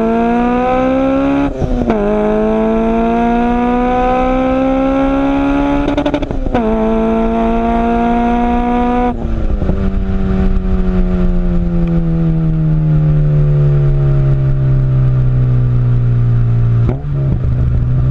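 Car engine accelerating hard through the gears. Its pitch climbs, drops at an upshift about a second and a half in and again around six seconds, and climbs once more. From about nine seconds it winds down in one long falling pitch as the car slows.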